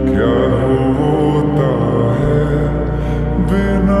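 Slowed-down, reverb-heavy Hindi film ballad: a long, gliding male vocal over sustained chords and a steady low bass.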